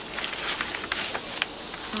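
Paper rustling and crinkling in irregular crackles as a paper mailer envelope is handled and its tissue-paper-wrapped contents are pulled out.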